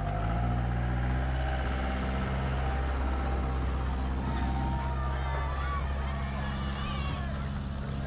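Engine of a tourist road train running steadily at idle, a low even hum. Faint voices come in about halfway through.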